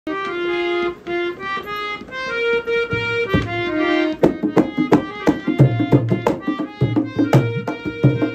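Harmonium playing a melodic introduction of held notes and chords, joined about four seconds in by a dholak drum beating a steady rhythm.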